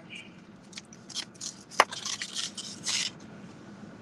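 Rustling and scraping from handling takeout food and its packaging, in several short bursts through the middle, with one sharp click just under two seconds in.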